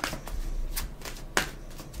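Tarot cards being shuffled by hand: a soft rustle of cards with a few sharp, irregular snaps as the deck is worked.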